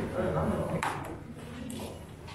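Indistinct voices of people talking in a classroom, with a brief sharp noise about a second in.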